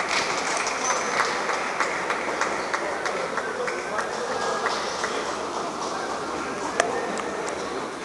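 Hall ambience of a table tennis venue: a steady murmur of voices with frequent, irregular sharp clicks of celluloid table tennis balls hitting tables and bats, and one louder click late on.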